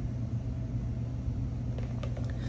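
Steady low hum with a faint rumble and hiss: the room's background noise between sentences.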